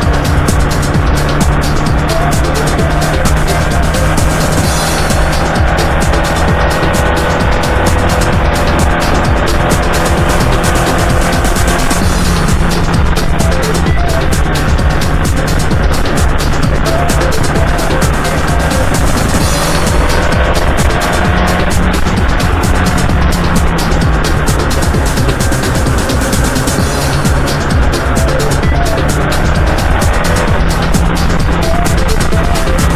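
Subaru R2 kei car driving on a paved road: its small engine runs steadily, with the pitch rising and falling gently as it goes, under constant road and tyre noise picked up by a camera mounted low near the road. Background music plays over it.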